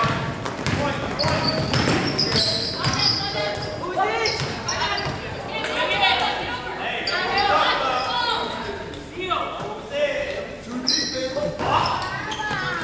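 Basketball game sounds in a gymnasium: the ball bouncing on the hardwood floor as it is dribbled, sneakers squeaking, and players and coaches calling out, all echoing in the large hall.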